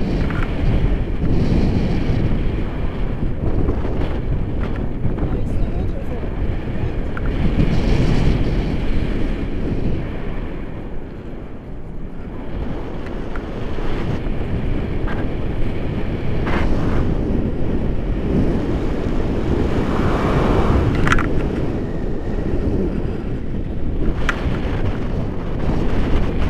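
Wind rushing over the microphone of a pole-held camera in paraglider flight: a loud, steady low rumble that eases briefly about halfway through, then builds again.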